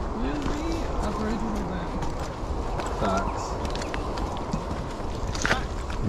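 People walking a dirt bush trail: footsteps and rustling, with quiet, indistinct talk in the background and a sharp click near the end.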